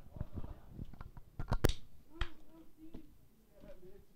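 A few scattered sharp taps and clicks at low level, the loudest about one and a half seconds in, with a faint murmur of voices.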